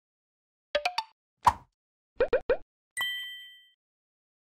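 Logo-animation sound effects: quick cartoon pops, three, then one, then three more, followed by a bright bell-like ding that rings out for under a second.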